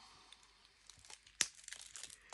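Quiet handling of a small metal pen-and-stylus, with faint ticks and one sharp click about one and a half seconds in as its cap is pulled off.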